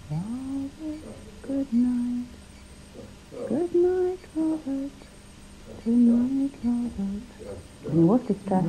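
A person humming a slow, soft tune to someone lying down, in three short phrases of held notes with pauses between them.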